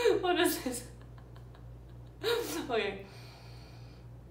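A woman's wordless vocal sounds: two short, breathy 'mm'-like sighs falling in pitch, one at the start and one a little after two seconds in. She voices them while holding the gentle-breathing, smiling tenderness pattern of Alba Emoting.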